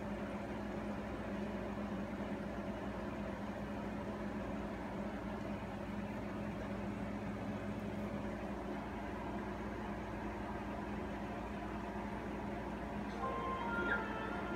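Steady electrical hum and hiss of a TV playing the silent stretch of a VHS tape. Music fades in about a second before the end.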